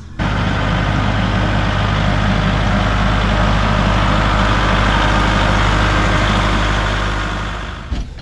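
Kubota utility tractor's diesel engine running steadily, dying away near the end.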